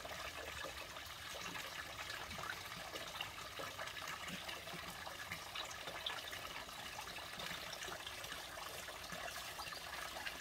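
Steady trickle of running water, an even wash of sound dotted with fine crackles.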